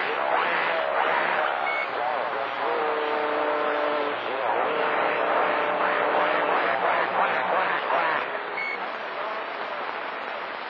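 CB radio skip reception on channel 28: distant voices come and go, barely intelligible under heavy static hiss. There is a steady tone for a moment in the middle, and the signal fades to mostly static near the end.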